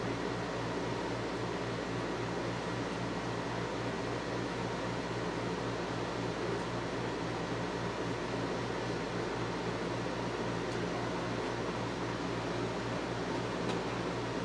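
Steady background hum with an even hiss, unchanging throughout, with no distinct knocks or clicks.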